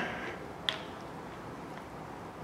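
A ratchet wrench snugging cam gear bolts gives one short, sharp click about two-thirds of a second in and a fainter one just after, over quiet room tone.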